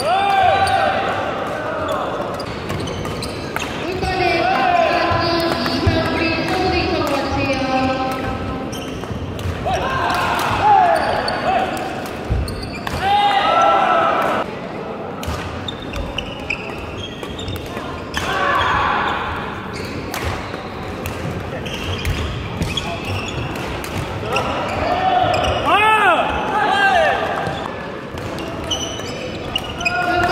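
Men's doubles badminton rally on a wooden court: repeated sharp racket strikes on the shuttlecock and footfalls, with sneakers squeaking on the floor and players' voices, echoing in a large gym hall.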